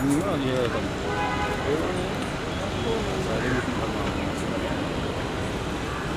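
Indistinct voices of people talking over a steady background noise, with a brief tone about a second in.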